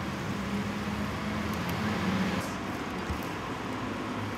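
Steady street traffic noise with a low engine hum underneath.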